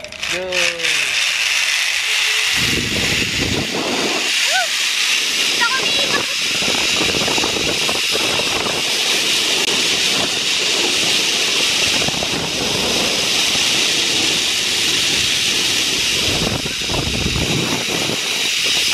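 Zipline ride: wind rushing over the microphone with the trolley running along the cable, a steady rush that builds about two seconds in and holds.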